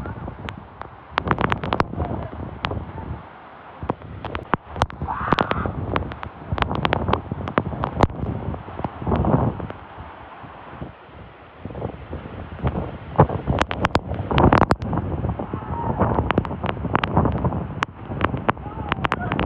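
Waterfall rushing, with wind and driven spray buffeting the microphone in irregular gusts and rapid crackles.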